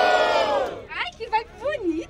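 An amplified "uou!" shout through the PA, held and fading out under a second in. It is followed by short shouts and voices from the crowd.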